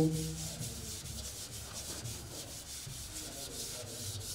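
Chalkboard duster rubbing across a chalkboard in rapid, repeated back-and-forth strokes, erasing chalk writing.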